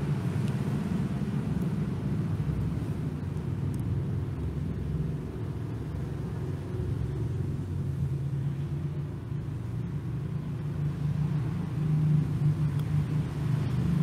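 A steady low motor rumble, growing a little louder near the end.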